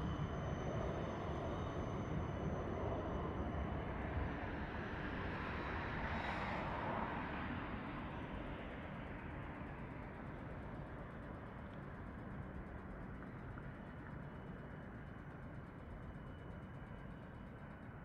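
Outdoor city traffic noise: a steady rumble with a vehicle passing, loudest about six seconds in, then slowly fading away.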